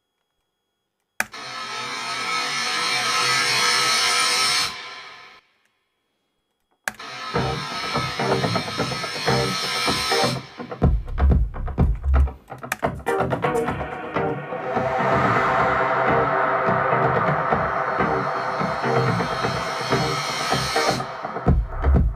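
Deep house track playing back from Ableton Live. A time-stretched noise uplifter sweep rises for about three and a half seconds and fades away. It starts again over the drums a moment later, and a heavy kick and bass come in about four seconds after that, with the full groove running on.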